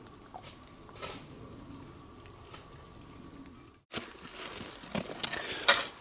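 Faint rustling and handling noise from a gloved hand. After a brief drop-out about four seconds in, soil and stones rattle and crunch as they are shaken through a plastic sifter, with a few sharp clicks.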